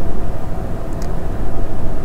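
Steady low rumbling noise, with one faint click about a second in.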